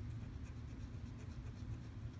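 Scratch-off lottery ticket being scratched: quick, repeated rasping strokes across the latex coating as a caller's number is uncovered.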